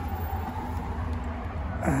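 Steady low outdoor background rumble, with a faint steady hum in the middle. A man's voice starts right at the end.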